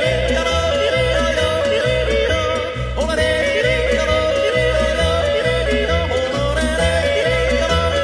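Background music: wordless yodeling in a Tyrolean folk song, over a steady bass beat.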